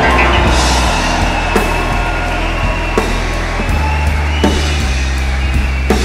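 Jazz quartet and symphony orchestra playing an instrumental passage of a song: held low bass notes under sustained orchestral chords, with a drum hit about every second and a half.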